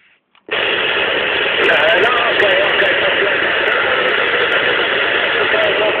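CB radio receiver opening abruptly about half a second in to a loud, steady hiss of static, with a faint wavering voice from a distant station fading in and out under the noise.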